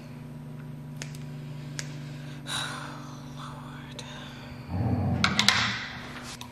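Light clicks and handling sounds of raw chicken being cut up at a kitchen counter, over a steady low hum. Near the end comes a louder stretch of rustling and clattering.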